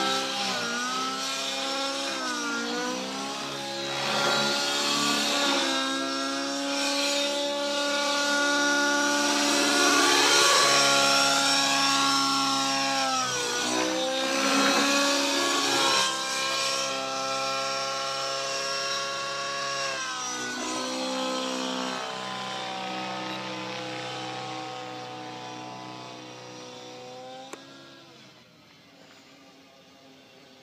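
Align T-Rex 700N DFC nitro RC helicopter flying aerobatics: its glow engine and rotor give a steady pitched note that rises and falls with the manoeuvres, growing fainter near the end as the helicopter climbs away.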